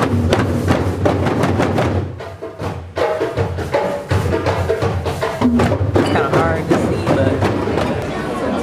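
Several djembe hand drums played together by hand, with rapid, dense slaps and tones in a fast rhythm.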